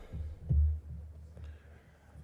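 A short low thump about half a second in, over a steady low hum.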